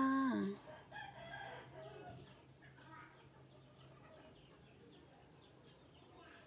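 A woman's drawn-out 'kha' ending a spoken greeting, falling in pitch and stopping about half a second in. Then faint bird calls follow, the first a longer call of about a second and a half.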